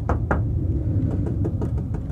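Two short, dull knocks near the start as fingers tap a painted metal window sill that is damped underneath by a sound-deadening layer, over a steady low rumble.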